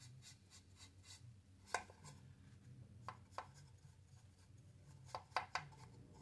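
Faint paintbrush strokes on an unfinished wooden crate: a flat brush spreading a watery paint wash over the wood, heard as a few short soft scrapes, with a quick cluster of three near the end.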